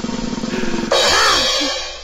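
Snare drum roll sound effect that ends in a cymbal crash about a second in, which then fades away. It is the stinger announcing a new segment of the show.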